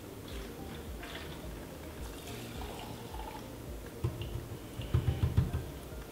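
Leftover methanol dribbling and dripping out of the neck of an upturned large plastic water-cooler bottle into a small plastic beaker, faint and uneven, with a few dull thumps about four to five seconds in.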